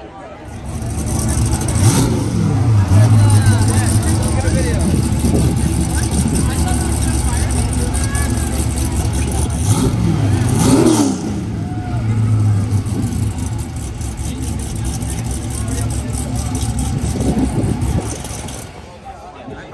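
A car engine running loudly, its revs rising about two seconds in and again around ten to eleven seconds.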